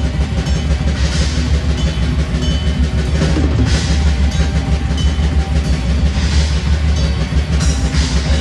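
Live black metal band playing loud: distorted electric guitars, bass guitar and drums with repeated cymbal crashes, heavy in the low end.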